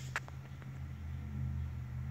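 A steady low hum, with one short click just after the start and a fainter click soon after.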